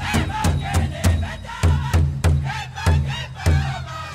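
Powwow song: a drum struck in a steady beat of about three strokes a second under high-pitched group singing.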